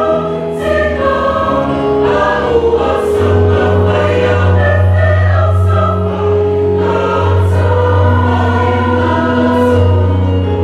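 A congregation singing a hymn together in unison, many voices holding long notes, with a steady low note running underneath from about three seconds in.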